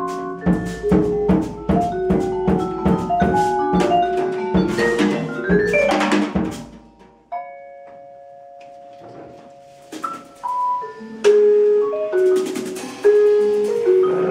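Jazz ensemble playing live: busy vibraphone notes over drum kit for the first half, then it suddenly thins to a few soft held notes, and the band comes back in loudly about eleven seconds in.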